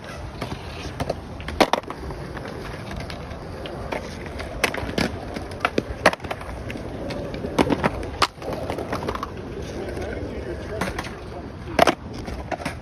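Skateboards knocking and clattering on concrete: scattered sharp clacks as boards are flipped and set down, with the loudest clack just before the end.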